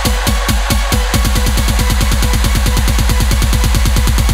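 Instrumental break of an electronic dance remix: repeated low kick-drum hits with a falling pitch, which about a second in quicken into a fast, dense drum roll that builds toward the next section.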